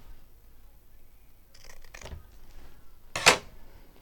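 Paper scraps rustling as they are handled, with one short, sharp, loud rustle a little over three seconds in.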